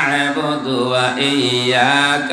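A man's voice chanting in long, held notes through a microphone, the sung, melodic delivery of an Islamic waz sermon.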